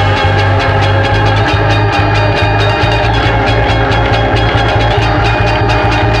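A rock band playing in the studio: electric guitar and drum kit over a low pulsing line, with quick cymbal or drum strokes running through.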